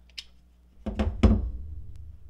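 A metal socket rail loaded with chrome sockets set down on a wooden tabletop: three quick knocks about a second in, the last the loudest, after a faint click as a socket comes off the rail.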